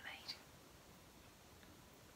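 Near silence: room tone, with a faint short sound just after the start.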